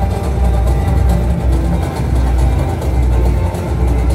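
Samba-enredo played live by a samba school's bateria and band, the surdo bass drums keeping a steady beat under dense percussion and strings.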